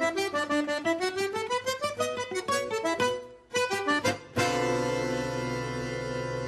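Background accordion music: a quick run of melodic notes, a short break a little after three seconds, then a long held chord that slowly fades.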